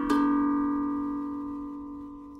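Stainless steel Vermont Singing Drum, a steel tongue drum, struck once just after the start. The last note rings on with several steady tones and fades slowly.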